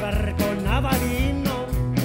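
Live folk-rock band playing: electric guitars, bass and drums with a steady beat, with a voice singing over it.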